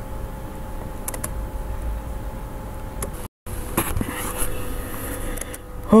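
Steady low background hum with a faint whine, picked up by a desk microphone. About three seconds in it cuts out completely for a moment, where the recording jumps. A few faint clicks follow.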